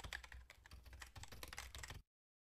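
Computer keyboard typing sound effect: a quiet, quick, irregular run of key clicks that stops abruptly.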